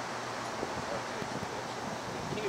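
Steady rush of wind and rustling grass, with the faint buzz of honeybees flying around an open nucleus hive.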